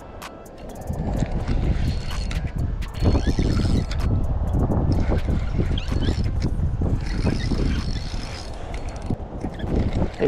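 Spinning reel cranked while fighting a fish from an aluminium boat, heard as irregular clicks and knocks of rod and reel handling over a steady low rumble of wind on the microphone.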